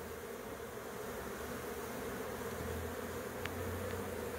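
A swarm of Africanized honeybees buzzing in a steady, even hum as it settles on and walks into a wooden hive box, the sound of a swarm moving into a new hive.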